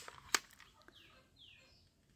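One sharp plastic click from a toy cap-gun revolver being handled in the hands, then two faint falling bird chirps about a second in.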